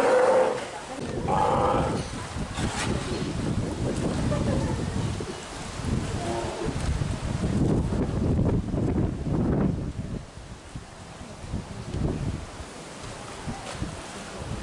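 Steller sea lion calls: a loud pitched call right at the start and a shorter, higher one about a second and a half in. Uneven low background noise follows through the rest.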